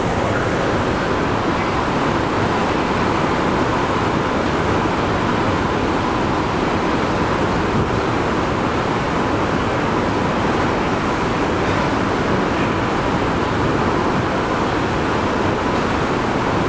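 Steady rushing noise aboard a moving ferry: wind on the microphone and water rushing past the hull, unbroken throughout, with a faint steady hum underneath.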